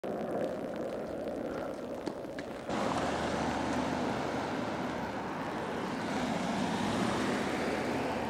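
Street noise of a car driving along the road, a steady rush with a low engine hum. It is quieter outdoor hiss with a few faint clicks at first, then it jumps louder about a third of the way in when the shot changes to the street with an old blue police sedan driving away.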